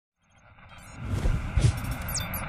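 Intro sound effects fading in from silence: a growing rumbling whoosh with a couple of deep low hits, leading into the intro music.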